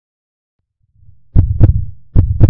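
Heartbeat sound effect: after a second of silence and a faint low rumble, one loud double thump, lub-dub, about a third of a second apart.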